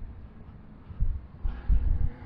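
Footsteps on brick paving, soft low thuds about twice a second, over faint outdoor background noise.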